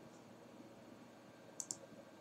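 A computer mouse button clicked once, a sharp press-and-release pair of clicks about a tenth of a second apart near the end, over a faint room hum.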